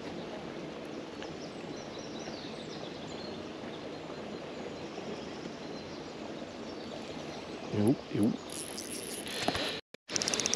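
Steady outdoor background noise by a pond, with a few faint bird chirps in the first seconds. The sound cuts off suddenly just before the end.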